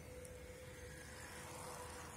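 Faint outdoor background noise: a low rumble with a thin steady hum, swelling slightly near the end.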